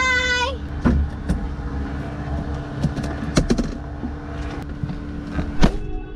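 A short high laugh at the start, then scattered clicks and knocks of things being handled in a small plane's cabin, over a steady low hum.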